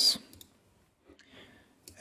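A few faint clicks of a computer mouse selecting a menu item, coming just after a spoken word trails off.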